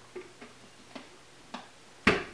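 Four faint, short clicks and taps spread over two seconds as hands handle the top of an Oster blender jar.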